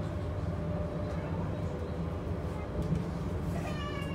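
Steady low rumble inside the cabin of a Transilien line H electric commuter train (a Z 50000 Francilien unit) running at speed. Near the end a brief high-pitched, slightly falling sound cuts in over the rumble.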